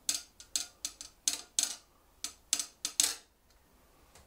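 A butcher's knife tapped in a quick, uneven drumming rhythm, about a dozen and a half sharp knocks, stopping about three seconds in.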